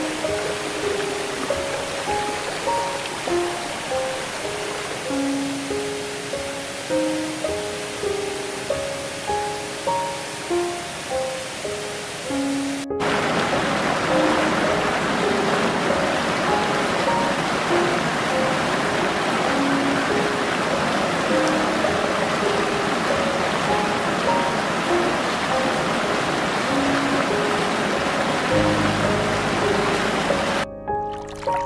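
Slow, soft relaxation music of single fading notes over a steady rush of flowing water. About 13 seconds in, the water noise cuts suddenly to a louder rush. Near the end a low sustained note joins the music.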